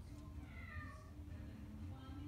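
A domestic cat giving one short, quiet meow that falls in pitch, about half a second in.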